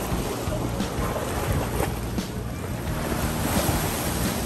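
Ocean surf washing steadily, with wind buffeting the microphone, under quiet background music.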